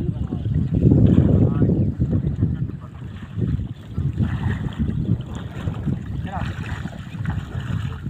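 Wind rumbling on the microphone, heaviest about one to two seconds in, mixed with water sloshing as people wade through shallow floodwater.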